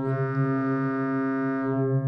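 Buchla Music Easel synthesizer holding one steady, bright note; near the end its upper harmonics fade and the tone goes duller, as finger pressure on the 218 touch keyboard, patched to the oscillator's timbre control, eases off.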